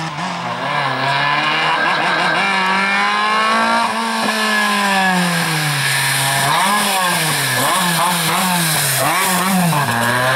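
Engine of a Volkswagen Golf Mk1 slalom car revving hard, its pitch climbing and dropping as the driver accelerates and lifts between the cone gates. In the second half the revs swing up and down quickly, about twice a second.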